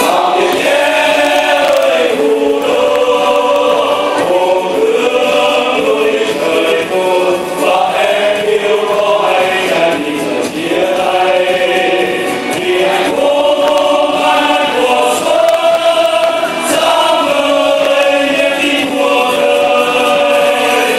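A choir singing a song with instrumental accompaniment, at a steady loud level throughout.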